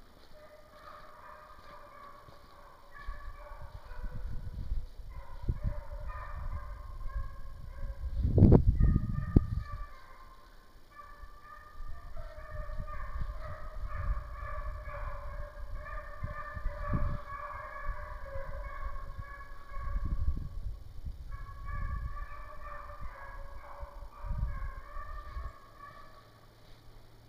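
A pack of young Walker hounds baying in overlapping, broken calls as they run a deer's trail, the sign that they are on the track. Low rumbling buffets on the microphone come and go over the calls, loudest about eight seconds in.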